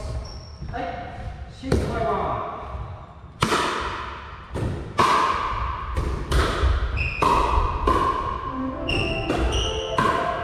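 Pickleball paddles hitting a plastic pickleball in a rally: a run of sharp pops, irregularly half a second to a second apart, starting about two seconds in and echoing in a large gym hall.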